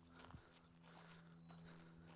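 Near silence: faint footsteps on gravel, a few soft steps from a person and a dog walking, over a low steady hum.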